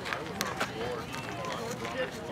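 Indistinct voices of players and spectators chattering, with two sharp clicks close together about half a second in.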